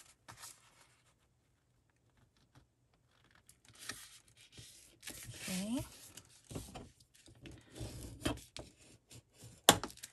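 Collaged paper card being folded and smoothed by hand on a cutting mat: quiet paper rustling and rubbing that starts a few seconds in, with a sharp tap near the end.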